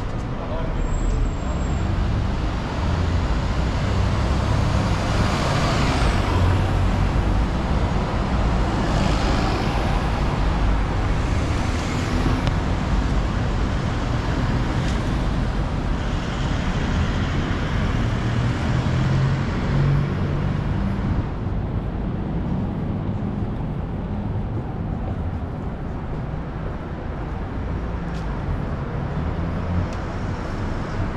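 Steady city street traffic: cars and buses driving past, with road noise and engine hum. It eases off slightly after about twenty seconds.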